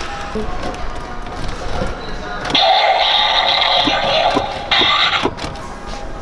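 An electronic sound effect from a battery-powered toy playset's small speaker. It starts suddenly about two and a half seconds in and lasts about three seconds with a short break near the end, over light clicks of handling and shop background noise.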